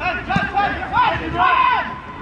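Several men shouting at once during football play, loud raised calls that rise and fall in pitch, overlapping one another.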